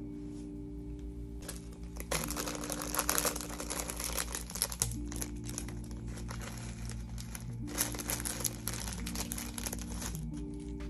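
A clear plastic packet crinkling as it is handled and opened by hand, from about two seconds in until near the end, over background music.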